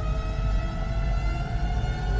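Synthesized sci-fi ambient soundscape: a deep, steady rumble beneath a single electronic tone with overtones that rises slowly in pitch.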